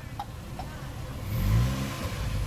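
Car engine revving up a little over a second in, its pitch rising and then easing back, over a low steady outdoor hum.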